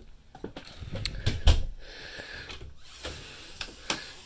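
A few scattered knocks and clicks, with one heavier low thump about one and a half seconds in.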